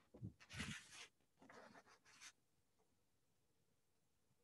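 Near silence, broken by a few faint, brief scratchy rustles in the first two seconds.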